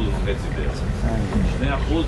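Speech, a few short words giving percentages, over a steady low background rumble.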